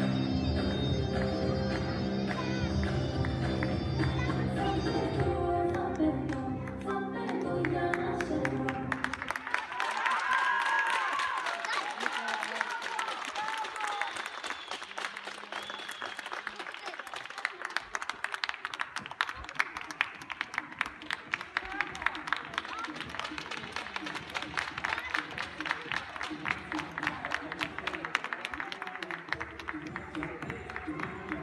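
Music for a gymnastics routine plays and stops about nine seconds in. Audience applause and cheering follow, thinning out towards the end.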